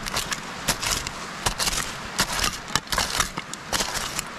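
A spade being driven into loose soil mixed with old dump rubbish, giving a run of irregular short scraping and crunching strokes.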